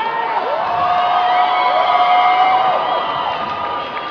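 Large audience cheering and screaming, with many long, high-pitched shrieks held over one another.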